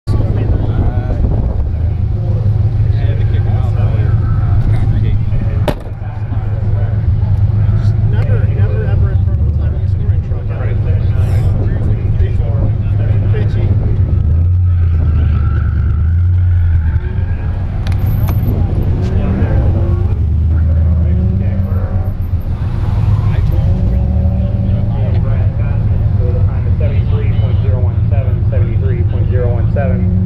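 Chevrolet Camaro autocross car's engine idling with a steady low hum that swells and shifts a few times, with a single sharp click about six seconds in. Voices are heard faintly over it.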